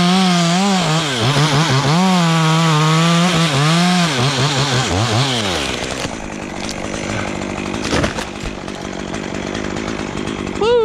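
Stihl two-stroke chainsaw running at high revs as it cuts through a walnut trunk, its pitch dipping each time it bogs under load, then winding down about five seconds in. A single sharp thump follows near eight seconds in.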